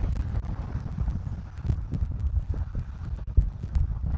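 Wind buffeting the outdoor nest-camera microphone: a gusty low rumble with scattered sharp knocks.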